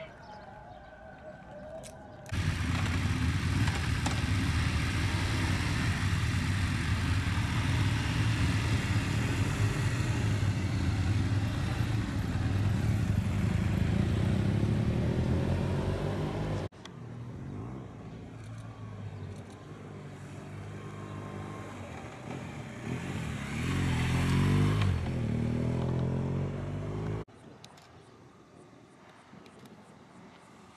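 Motorcycle engines running loudly. After an abrupt cut, a motorcycle engine revs up and down with rising and falling pitch, louder near the end, then cuts off suddenly.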